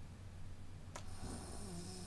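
A quiet pause over a steady low room hum, with a small click about a second in, then a faint, low nasal 'mm' from a person thinking.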